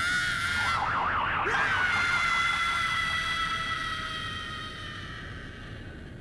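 A woman's long, high-pitched scream. It wavers at first, then is held as one drawn-out note that slowly drops in pitch and fades away near the end.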